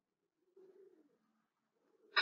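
Near silence: faint room tone, with a very faint low wavering sound through the middle.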